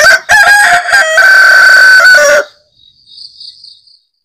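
A rooster crowing once, a loud call lasting about two and a half seconds, followed by faint high bird chirps.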